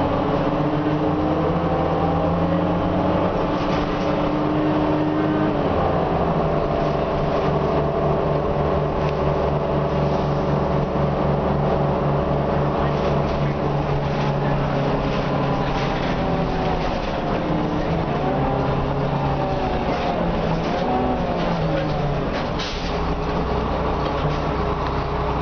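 Orion V city bus's Cummins M11 diesel engine and Allison B400R automatic transmission, heard from inside the passenger cabin, running steadily under way. The engine note shifts in the last several seconds as the bus slows.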